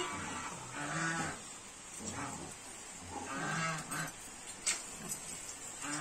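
A pug making low, drawn-out vocal sounds, three of them, each under a second, while it is being washed in a tub of water.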